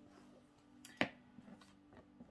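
Oracle cards being drawn from a deck and laid down, with one sharp card click about a second in and a few faint ticks after it, over a faint steady low hum.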